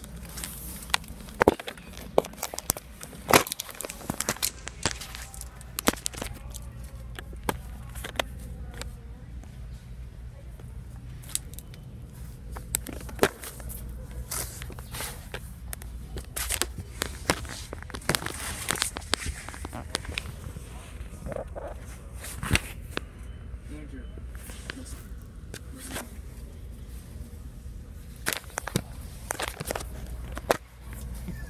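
Irregular rustling, crackling and sharp clicks of handling noise, the phone and clothing rubbing and knocking against cardboard boxes in a cramped space, over a steady low hum.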